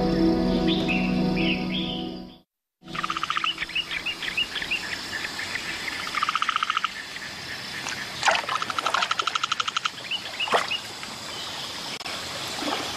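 Soft music with sustained low tones breaks off about two and a half seconds in. After a brief gap, birds call in open-air ambience: short high chirps and a couple of rapid pulsing trills.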